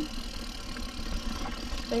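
Steady rumble and rattle of a mountain bike riding down a rough downhill trail, with wind buffeting the camera microphone.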